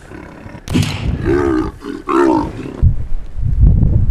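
A sudden sharp noise a little over half a second in, then a leopard snarling twice, followed by deep rumbling near the end.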